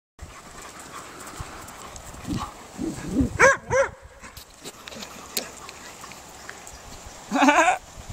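Dogs playing chase, with a couple of short high yips about three and a half seconds in, over steady outdoor background noise.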